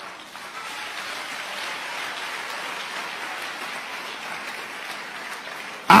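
Congregation applauding: a steady, even wash of clapping that swells in over the first half second.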